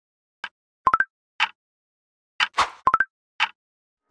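Snapchat notification sound: a quick three-note rising blip, heard twice about two seconds apart, with short hissy clicks between the blips.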